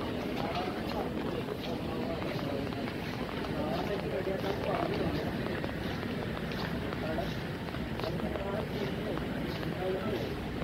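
Busy airport terminal ambience: a steady murmur of indistinct voices over the rolling rumble of a luggage trolley being pushed along a tiled floor, with small clicks and taps of footsteps and wheels.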